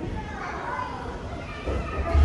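Indistinct children's voices in a large hall, with a heavy music bass line coming in near the end.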